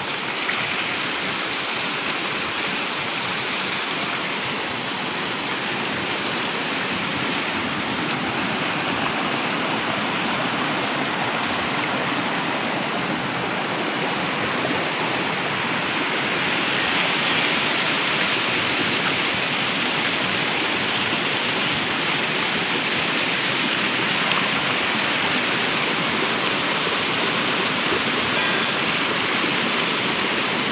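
Water pouring from several spouts of a stone spring tank (kund dhara) into the pool below: a steady rushing splash.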